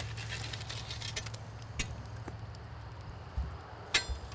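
A shovel working hot coals out of a campfire: a few scattered clinks and knocks, with a sharp clack near the end, over a steady low hum.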